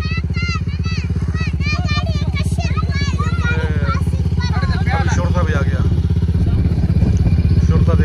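An engine running steadily nearby with a low, even pulse, growing slightly louder near the end.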